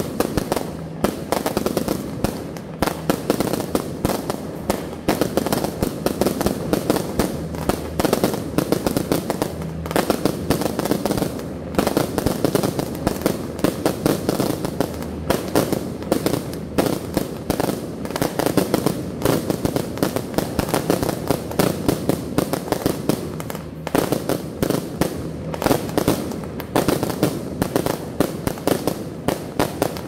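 Firecrackers going off in a dense, continuous rapid crackle of sharp bangs, dipping briefly a few times before picking up again.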